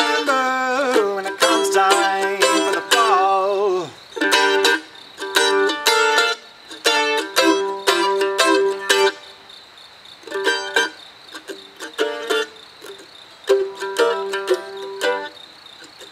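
A mandolin is strummed in a bluegrass rhythm, with a sung note held over it for the first few seconds that trails off about four seconds in. The chords then go on briskly, and thin out to sparse strums in the second half.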